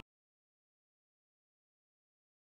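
Silence: the audio drops out completely.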